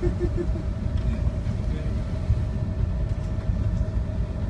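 Steady low rumble and hum of a ship's engine running under way while towing another vessel, with wind and sea noise over it.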